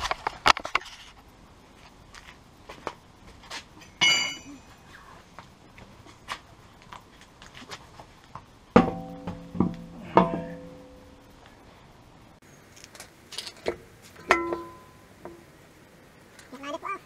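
Scattered clicks and a high metallic clink from a car wheel and tools being handled as the wheel goes back onto the hub. A few ringing plucked-string notes sound around the middle and again near the end.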